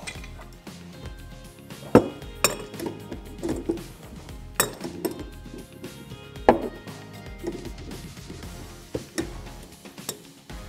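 Adjustable spanner clinking against the brass nut of a stopcock as the nut is tightened back down over PTFE tape to seal a leak: about five sharp metal clinks at irregular intervals, over background music.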